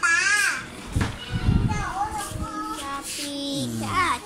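A child's high voice wavering up and down in pitch, with low rumbling knocks on the handheld phone's microphone in the middle. A lower voice speaks near the end.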